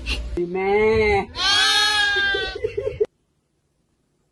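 Cat yowling: two long drawn-out calls, the second higher-pitched than the first, trailing into a short warble. The sound cuts off suddenly about three seconds in.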